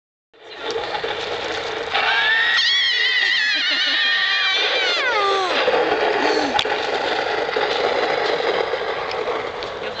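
A long, high-pitched wavering wail that starts about two seconds in, holds for a couple of seconds, then slides steeply down in pitch, over a steady background noise.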